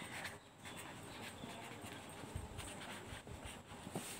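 A pen scratching faintly on paper while a word is handwritten, a run of short, uneven strokes.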